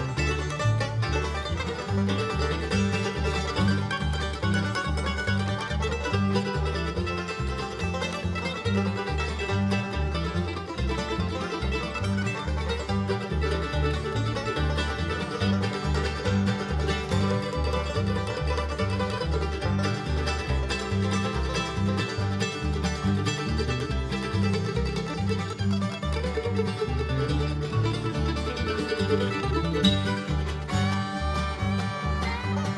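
A bluegrass string band playing a fast instrumental featuring the mandolin, with fiddle, five-string banjo, acoustic guitars and upright bass over a steady, even bass pulse.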